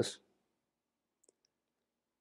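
The tail of a man's spoken word fading out, then near silence with a faint click or two.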